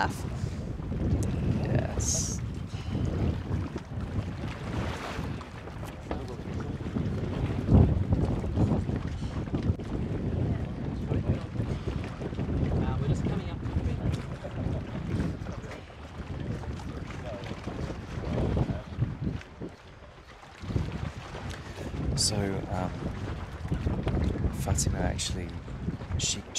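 Wind buffeting an outdoor microphone over open water: an unsteady low rumble that swells and fades, with faint voices in the distance now and then.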